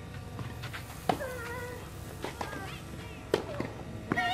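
Tennis balls struck by rackets during a rally on a clay court: sharp pops about two seconds apart, with fainter knocks between them. A high, wavering child's voice calls out between the strokes.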